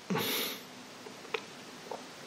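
A man drawing a quick breath between sentences, lasting about half a second, followed by two faint mouth clicks.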